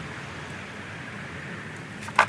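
Steady background noise: an even low hiss with a faint hum underneath and no distinct knocks or clicks.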